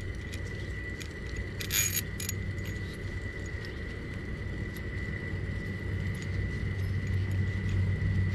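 Small metal clicks of a bolt and washers being handled and pushed through a trailer jack's steel caster-wheel bracket, with one brighter clink about two seconds in. A steady low hum and a faint high steady tone run underneath.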